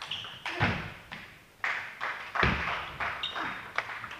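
Table tennis rally: sharp clicks of the ball off bats and table, with two heavy thuds, about half a second and two and a half seconds in, that are the loudest sounds.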